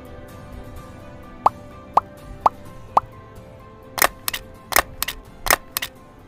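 Soft background music, over which four short rising pops come half a second apart, followed by a quick string of sharp clicks and snaps: sound effects for an animated title.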